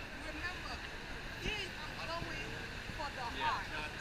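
Busy city street ambience: scattered voices of passers-by over a steady hum of traffic, with a voice saying "yeah" near the end.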